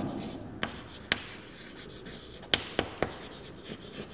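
Chalk writing on a blackboard: a faint scratching broken by about five sharp taps as the chalk strikes the board.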